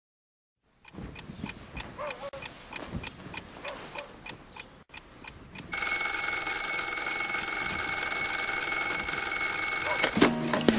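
Alarm clock ticking steadily, about four ticks a second. About six seconds in its alarm starts ringing, loud and continuous.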